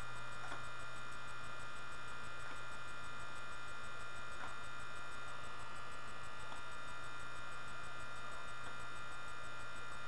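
Steady electrical mains hum with a constant high whine, the kind of noise a cheap webcam microphone picks up. A few faint soft ticks come about every two seconds.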